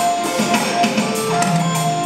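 Roland electronic drum kit played fast, a dense run of quick strokes heard through the speakers, over a backing track with sustained pitched instruments.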